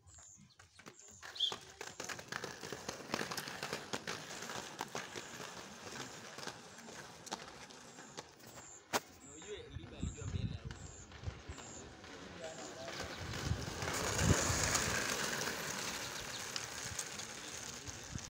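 Inline skate wheels rolling on an asphalt road, a continuous rough rolling noise with small ticks and scrapes. Wind buffets the microphone in heavier low gusts, loudest about two thirds of the way through.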